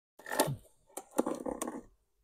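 Metal hive tool scraping and clicking against the hive box and plastic queen excluder: a short rasp, then a few sharp clicks and scrapes about a second in.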